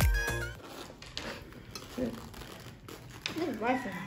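Background music that stops about half a second in, followed by a quiet room with faint crinkling and light clicks of foam takeout containers being handled, and a soft voice near the end.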